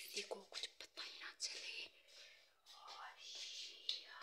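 Whispered speech in short, breathy phrases.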